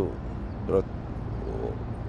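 Steady low rumble of background road traffic, with a man's single short spoken word about two-thirds of a second in.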